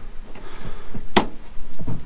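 A single sharp plastic click about a second in, the hinged plastic cover flap over the brake fluid reservoir in the engine bay being unclipped, with a few faint handling knocks around it.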